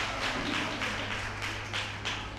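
Audience clapping at the end of a talk, a quick, uneven patter of many hands over a steady low hum.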